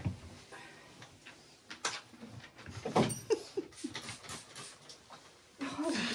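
Dogs moving about on a hard floor: scattered knocks and shuffling, with a couple of brief whimpers a little past the middle.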